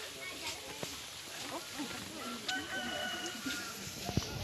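A rooster crowing once, a drawn-out, level call about two and a half seconds in, over the murmur of many voices.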